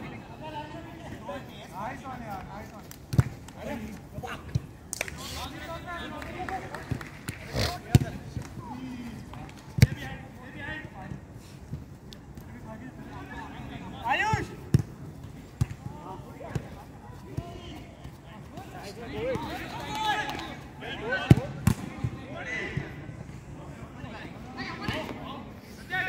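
A football being kicked on artificial turf: a handful of sharp thuds spread through the passage of play, with players shouting to each other in between.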